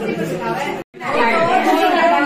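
Overlapping chatter of several people talking at once, broken by a brief total gap a little under a second in.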